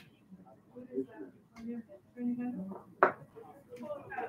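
A single sharp smack of a pitched baseball arriving at the plate about three seconds in, with people talking in the background.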